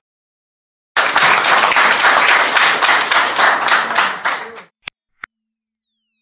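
A video outro's sound effects: after about a second of silence, a few seconds of loud, dense crackling noise that cuts off suddenly, then two quick clicks and a high electronic tone sweeping downward as the channel logo appears.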